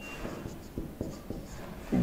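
Marker pen writing on a whiteboard: a series of short, irregular strokes as a word is written out.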